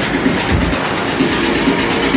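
Techno played loud over a club sound system, with a rhythmic, clattering hi-hat and percussion pattern over the kick drum, the bass thinning out for a moment about halfway through.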